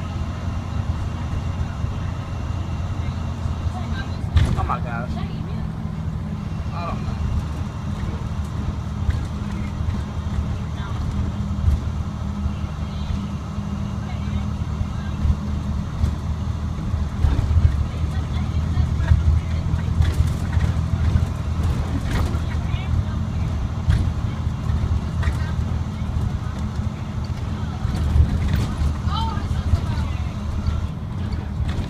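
Diesel engine of a 2006 IC CE300 school bus, a Navistar DT466E, running steadily under way, heard from inside the driver's cab as a low drone. Occasional knocks and rattles from the bus body come through over it.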